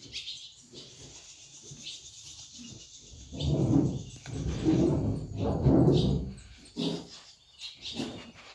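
A horse making a low, drawn-out sound in three pulses about a second apart, starting about three seconds in. Faint bird chirps sound in the background.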